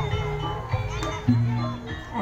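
Javanese traditional music of the kind played for an ebeg barongan trance dance: low held notes under a melody, with a voice singing or calling over it.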